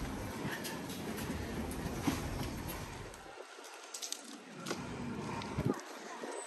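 Outdoor town-street ambience: a low rumble that cuts out abruptly about three seconds in, over a faint background hum with scattered small clicks.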